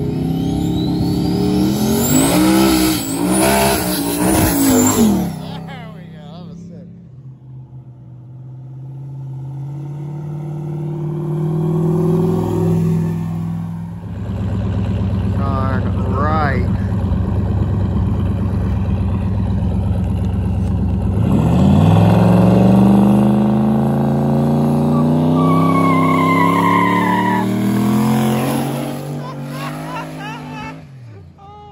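Car engines revving hard during street burnouts, the note rising and falling in the first few seconds. Later, from about two-thirds of the way in, a car winds up to high, climbing revs as it pulls away down the road, fading near the end.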